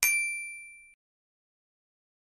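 A single bright ding sound effect that fades for about a second and then cuts off suddenly, marking an answer appearing on the slide.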